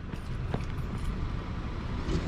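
Steady low rumble of street traffic, with a faint click about half a second in.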